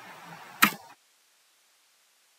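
A single computer keyboard keystroke, the Enter key pressed to run a typed command, about half a second in over faint hiss, with dead silence after it.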